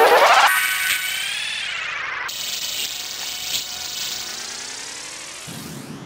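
Sampler-processed sound swept by an effect, its many stacked pitches gliding down and back up in curves. It drops sharply in level about half a second in, then fades slowly.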